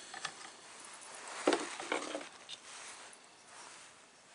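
Faint clicking and scratching as the chuck jaws of a laser engraver's rotary attachment are loosened with a hand tool and the metal workpiece is freed, with a sharper knock about one and a half seconds in.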